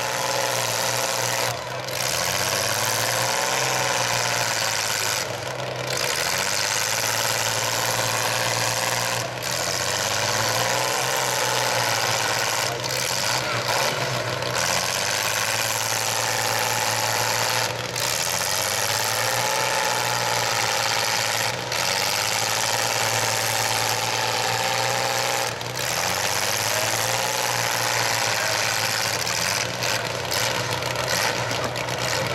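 Engines of several small demolition-derby pickup trucks running and revving in the mud pit, their pitch rising and falling again and again.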